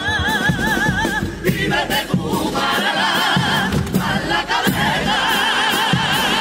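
Male carnival comparsa chorus singing a pasodoble in full voice, holding long notes with wide vibrato, over Spanish guitar and a steady bass drum and cymbal beat. The held notes mark the climactic close of the pasodoble.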